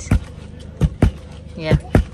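Wooden pestles pounding pearl millet (mahangu) in a wooden mortar: four dull thuds in an uneven rhythm, two of them coming close together as the pestles strike in turn.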